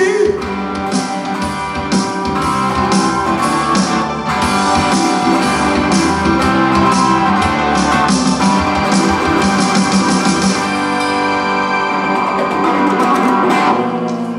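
Electric guitar playing an instrumental ending over a steady beat, the music stopping near the end.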